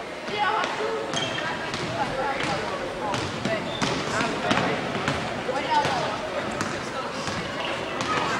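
A basketball being dribbled on a hardwood gym floor, bouncing repeatedly, with voices shouting in the gym.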